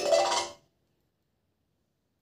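Wooden bars of a large xylophone struck with mallets: a quick burst of bright ringing notes in the first half second, cut off sharply.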